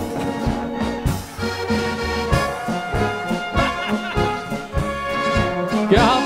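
Live Blasmusik band playing a polka with no singing: trumpets, flugelhorns, tubas and trombones with an accordion over a steady, even beat.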